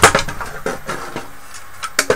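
Aluminium drive frame and plate being handled and turned over on a wooden tabletop: a sharp knock as it is set down, then lighter clicks and clatter of metal on wood, with another knock near the end.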